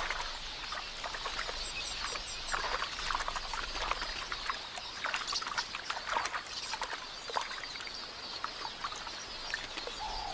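A flock of quelea twittering at a waterhole, with many short splashes in the shallow water as terrapins attack the drinking birds.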